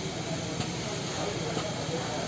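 Air-driven hydraulic tensioning pump running with a steady hiss as it builds pressure in the bolt tensioners.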